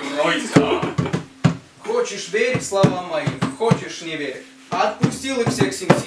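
Indistinct voices, with several sharp knocks or thumps scattered through.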